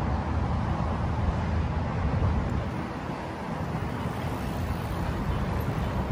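Steady road traffic noise: a low, continuous rumble with no distinct events, easing slightly in the middle.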